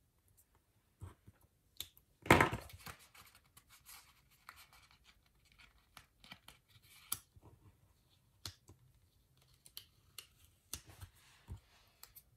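Paper handling as stickers are placed and pressed onto a planner insert: small clicks and taps with short rustles and scrapes of paper. The loudest is a brief scrape about two seconds in.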